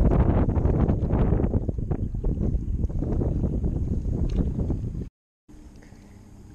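Heavy wind noise buffeting the microphone, a loud rush with scattered small knocks and rustles. It cuts off suddenly about five seconds in; after a brief silence a much quieter background follows.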